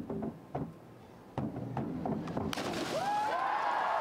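Diving springboards knocking twice in the first second as the divers take off, then crowd noise swelling into cheering and applause over the second half, with shouts rising above it near the end.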